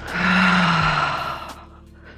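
A woman's long, audible sigh, breathed out close to a headset microphone, with a faint voiced tone falling in pitch; it lasts about a second and a half, then fades.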